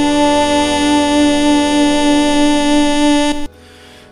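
Gospel vocal quartet and accompaniment holding one long chord, a few of its pitches wavering with vibrato, which stops abruptly about three and a half seconds in.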